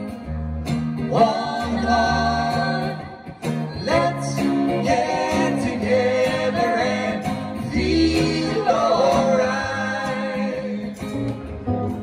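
Live acoustic music: a woman singing with held, sliding notes over an acoustic guitar.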